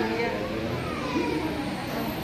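Indistinct chatter of several voices in a busy room, over a steady low background rumble.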